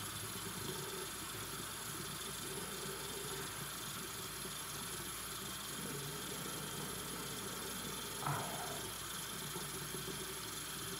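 A steady background hum and hiss, even in level throughout.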